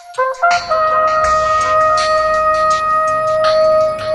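Instrumental music: a trumpet plays a few short notes, then holds one long note over a low accompaniment and light percussion.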